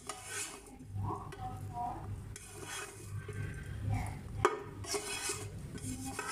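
Spatula scraping cooked shredded chicken out of a pan into a bowl, in repeated strokes, with one sharp knock of the utensil against the pan about four and a half seconds in.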